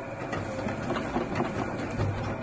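Fortuna Automat A3 roll divider-rounder running: a steady electric motor hum under an irregular mechanical rattle and clicking from the press mechanism.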